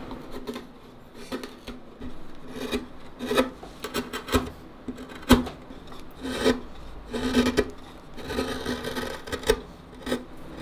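A hand tool scraping and paring a wooden violin neck in short, uneven strokes, about one or two a second, with the wood ringing under each stroke. There is one sharper crack about five seconds in.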